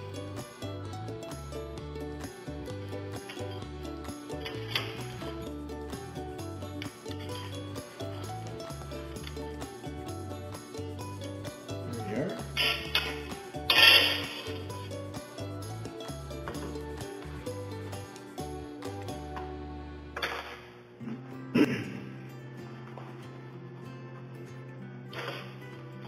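Background music with a steady, repeating bass line, broken by a few sharp knocks, the loudest about fourteen seconds in.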